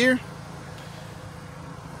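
A word of speech ends, followed by a steady low background rumble with a faint steady hum running through it.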